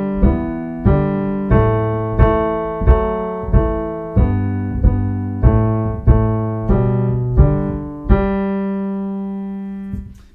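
Piano playing a simple melody and a low accompaniment line together, a note struck about every two-thirds of a second in a steady beat. The last chord, struck about eight seconds in, is held and rings out.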